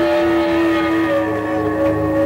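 Live electric guitars holding a long sustained chord, the notes sagging slowly lower in pitch, with a low bass tone swelling in near the end.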